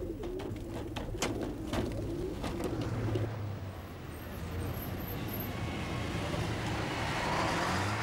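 Racing pigeons cooing in their transport crates while the crates are handled and stacked, with several knocks and clatters in the first three seconds. A low steady rumble runs underneath.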